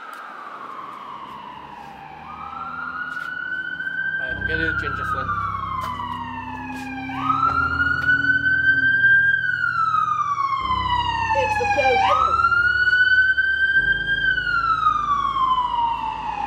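An emergency vehicle siren wailing in slow cycles. Each cycle is a quick rise and a long falling glide, repeating about every five seconds, and the siren grows louder about seven seconds in. A low droning hum underneath changes in steps.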